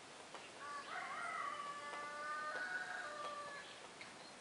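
A rooster crowing once: a single call of about three seconds starting about half a second in, rising at first and then held.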